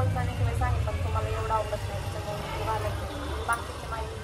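A woman speaking in Marathi over a steady low rumble, with one brief sharp click about three and a half seconds in.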